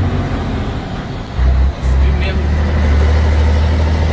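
Scania 113H truck's 11-litre straight-six diesel heard from inside the cab while driving, a steady low drone. About a second and a half in it grows louder, drops for a moment, then carries on louder.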